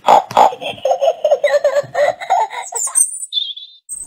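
A child's giggling laughter, a rapid string of short pulses lasting nearly three seconds, followed by a brief high whistling glide.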